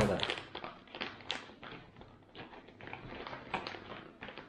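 Foil freeze-dried meal pouch crinkling as it is handled, a string of small irregular crackles and taps.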